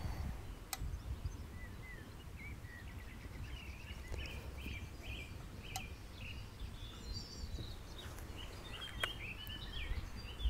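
Quiet outdoor ambience: small birds chirping in a run of short high notes, over a low rumble and a few faint clicks.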